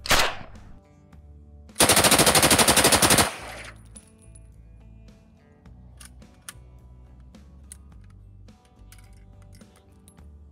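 Soviet PPS-43 submachine gun in 7.62×25mm firing full auto: a short burst right at the start, then a longer burst of about a second and a half, roughly a dozen rounds at about ten a second. Faint background music runs underneath.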